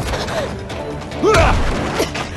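Fight-scene sound effects with a loud heavy hit about a second and a half in.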